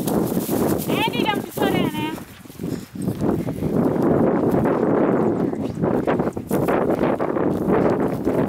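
Footsteps crunching through dry grass, with a short high-pitched laugh about a second in.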